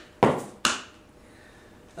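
A drummer's hand tapping out a simple steady beat on a hard surface, about two strikes a second; the last two strikes come in the first second, then the beat stops.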